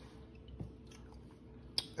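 Faint chewing of a mouthful of soft food, with a short sharp click near the end.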